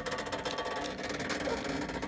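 Small engine of a Zoom 1740 zero-turn riding mower running steadily at a low level, a constant hum without change.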